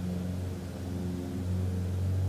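A low, steady droning hum with overtones, swelling a little about one and a half seconds in.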